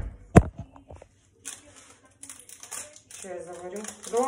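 Two sharp knocks about half a second apart, then a crinkling, crackling rustle of something handled in the fingers, a crackle she puts down to the weather.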